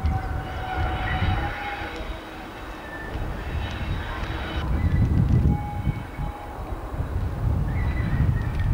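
Class 37 diesel locomotive approaching slowly, its engine a pulsing low rumble that grows louder about halfway through. Thin high-pitched squealing tones come and go over the top, as wheels scrape on the tight curve.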